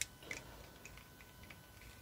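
Faint, small clicks and ticks of hard plastic parts of a Beast Wars Cheetor action figure being pressed and worked into place during its transformation, with one sharper click at the very start.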